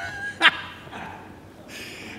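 A man laughing hard: a high, held squeal of laughter that ends just after the start, a short sharp burst about half a second in, then fading.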